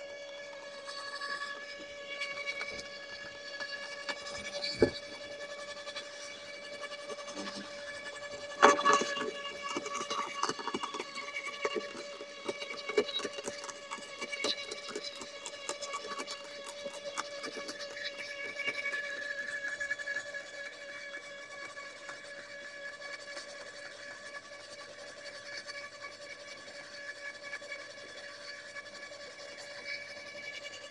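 Makita UD2500 electric roller shredder running with a steady motor whine while its cutting roller crushes and snaps branches fed into it. There is a sharp crack about five seconds in, and the cracking is densest from about nine to eighteen seconds.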